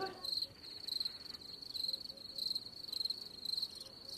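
Cricket chirping at night: a high, steady trill that swells in regular pulses about twice a second.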